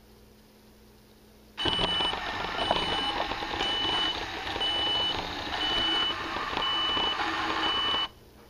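A reversing beeper sounding about once a second over a rumbling noise. It starts suddenly about a second and a half in and cuts off abruptly.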